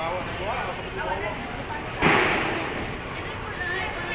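A single sudden loud smack about two seconds in, dying away over about half a second, amid people chatting and laughing.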